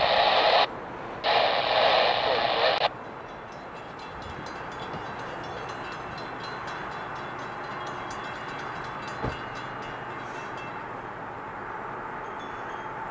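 Scanner radio picking up railroad transmissions: short bursts of crackly, thin-sounding radio audio that switch on and off abruptly in the first three seconds. A steady low background noise follows, with a single knock about nine seconds in.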